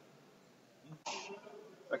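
A man briefly clears his throat about a second in, after a near-silent pause.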